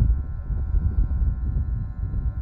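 Low, uneven rumble of wind buffeting an outdoor microphone.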